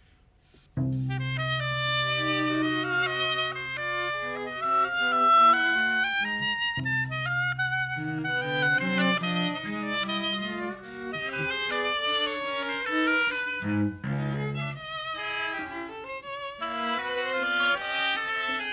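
Live chamber trio of violin, cello and oboe playing a modern, somewhat atonal piece. A held low cello note sits under moving violin and oboe lines. The music comes in about a second in, after a moment of silence.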